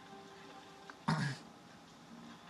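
One brief throaty vocal sound from a person, about a second in, like a throat clearing.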